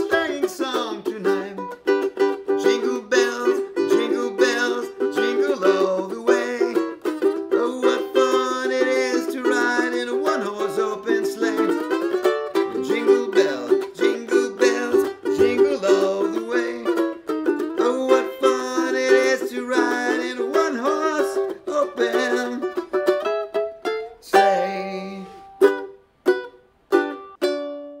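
Ukulele strummed briskly in a steady rhythm. About 24 s in it breaks into a few separate strums and ends.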